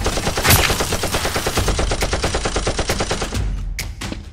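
Movie-style machine-gun sound effect standing in for a Nerf blaster's fire: a fast, even rattle of shots with one loud blast about half a second in. It cuts off shortly before the end.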